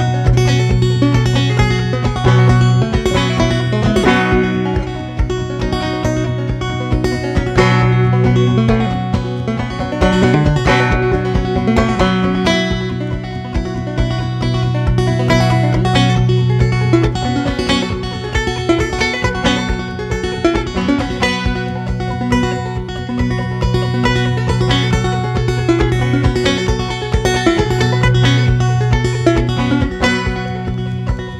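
A banjo played solo in clawhammer style, a fast, continuous, rhythmic instrumental tune, with percussive 'piano banjo' touches added to the picking.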